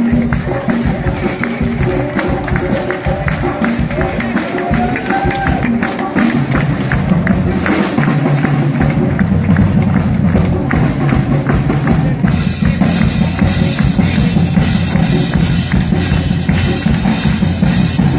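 A big band playing live, with the drum kit keeping a steady beat; the band comes in fuller and louder in the low range about six seconds in.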